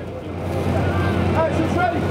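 City street noise: a steady low hum and traffic noise that swells during the first half second, with faint voices of people nearby.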